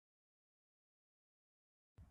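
Silence: the audio track is blank, with faint sound coming in only at the very end.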